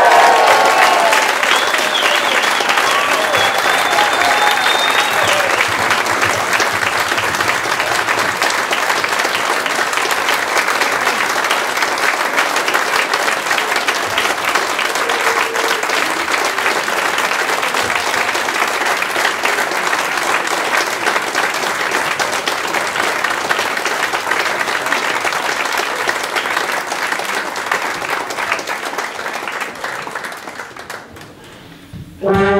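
Audience applauding steadily after a brass band piece, with a few voices cheering in the first few seconds. The applause fades away at the very end.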